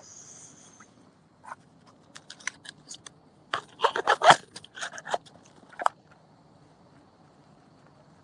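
Irregular sharp clicks and crackles, densest and loudest about four seconds in, stopping near the six-second mark, after a brief hiss at the start.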